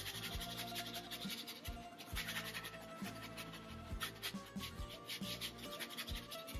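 Wide flat bristle brush scrubbing paint across canvas in quick, repeated strokes, over soft background music with held low notes.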